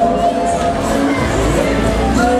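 Funfair music mixed with a crowd and riders shouting as the Polyp octopus ride spins, a dense, steady din with no break.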